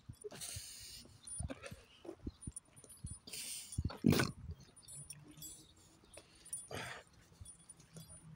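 A man's heavy, laboured breathing as he walks in pain: long hissing exhales about every three seconds, with a short low groan about four seconds in. Light footstep knocks in between.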